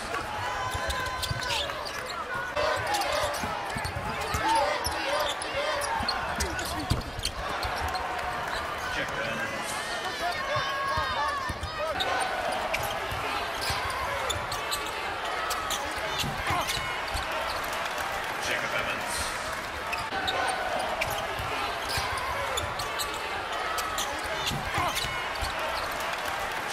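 Game sound from a basketball arena: a ball bouncing on a hardwood court with repeated sharp bounces, short sneaker squeaks, and a steady murmur of crowd voices.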